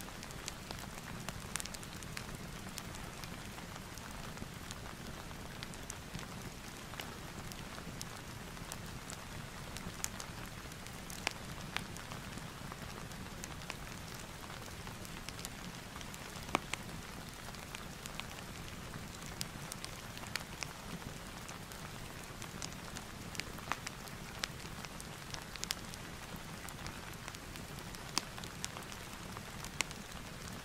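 Steady rain ambience with scattered sharp crackles of a wood fire mixed in, the crackles coming irregularly, a few each second.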